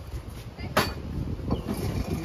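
A single sharp knock a little under a second in, with a fainter one later, over a low rumble of wind on the microphone.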